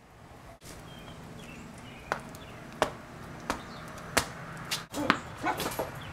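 A tennis ball bouncing on pavement, a sharp knock about every 0.7 s from about two seconds in, quickening near the end.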